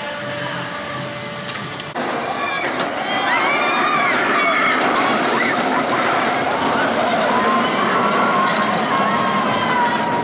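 A roller coaster train running along its track overhead, a steady rushing rumble of wheels on steel, with the riders screaming and shouting. It gets louder about two seconds in.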